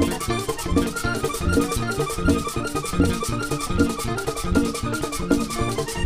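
Live vallenato band playing an instrumental passage: a button accordion carries the melody over bass and a steady, quick percussion beat.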